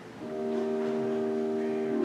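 Organ playing slow, sustained chords: one chord releases at the start, and a new chord is held steady for nearly two seconds before the harmony moves on at the end.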